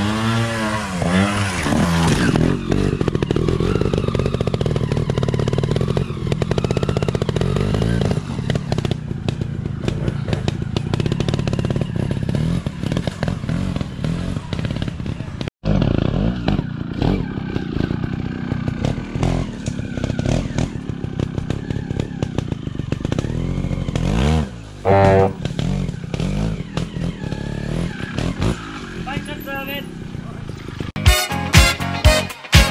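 Trials motorcycle engines revving up and down in sharp blips as the bikes pick their way over roots and climb a wooded bank. There is an abrupt break about halfway through, where a second bike takes over.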